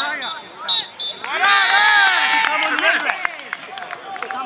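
Several voices shouting together: a few short calls, then a loud overlapping outcry of about a second and a half that fades away.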